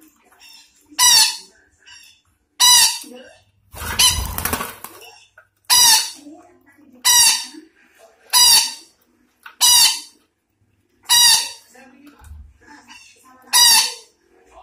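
A Betet Sumatra parakeet giving loud, harsh squawking calls, nine in all, about one every one and a half seconds. The call about four seconds in is a longer, rasping screech.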